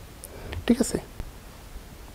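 Brief, soft speech from a man saying "thik ache" (okay) in Bengali, otherwise only quiet room tone.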